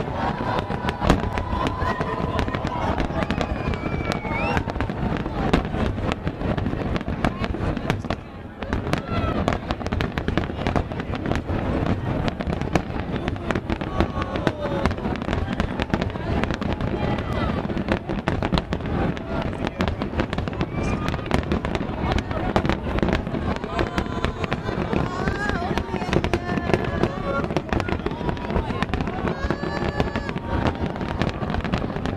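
Aerial firework shells bursting in rapid succession: a continuous run of bangs and crackling, with a brief drop in loudness about eight seconds in.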